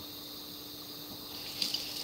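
Kitchen sink tap turned on about one and a half seconds in, water starting to run for rinsing fresh blueberries, over a steady hum.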